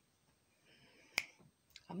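A single sharp click a little over a second in, in an otherwise quiet pause; a woman starts singing again at the very end.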